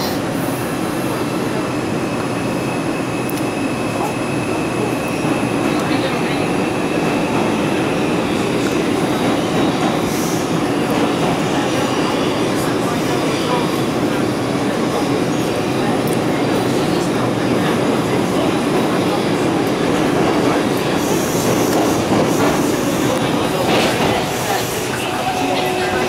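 Bombardier R142 New York City subway car heard from inside while running along the track: a steady loud rumble of wheels and running gear, getting a little louder over the first several seconds. A thin high tone comes in a few seconds in and fades after several seconds.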